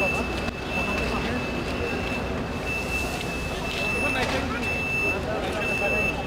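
A vehicle's reversing alarm beeping steadily, one high beep about every second, over a running bus engine and people talking.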